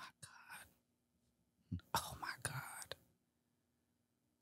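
A woman's faint breathy whisper or exhaling sigh, lasting about a second from about two seconds in, over a faint steady hum.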